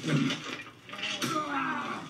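Fight-scene audio from a television drama: a short noisy scuffle, then a man's strained groan, falling in pitch, in the second half.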